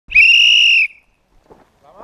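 One loud, steady, high-pitched blast on a whistle, lasting a little under a second, signalling the start of an airsoft round.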